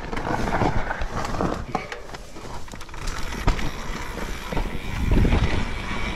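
Mountain bike riding down a rough, rocky trail: tyres rolling and crunching over rock and dirt, with repeated sharp knocks and rattles from the bike over the bumps. Wind rumbles on the microphone, heaviest about five seconds in.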